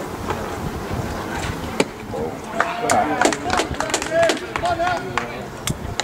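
Distant raised voices of players and spectators calling out at a baseball game, with a single sharp pop just before two seconds in.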